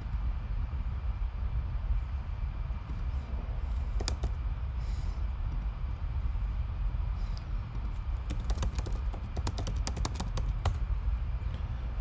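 Computer keyboard keys clicking: a few scattered keystrokes, then a quick run of typing near the end, over a steady low hum.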